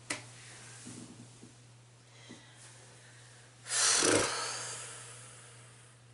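A woman's heavy breath out, a sigh that comes on suddenly about four seconds in and tails off over a second or two, after a brief sigh at the start. A steady low electrical hum runs underneath.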